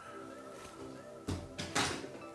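Quiet background music, with two short scuffs of hands handling items in a foam-lined box, a little past halfway through.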